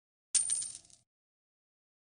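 Short coin-clink sound effect of the Bijian editing app's end card, marking the like, coin and favourite icons lighting up. It sounds once, about a third of a second in, with a bright high ring that dies away within a second.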